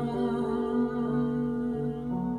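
A woman's voice holding a long, steady hummed note over sustained backing chords, the closing note of a slow vocal song.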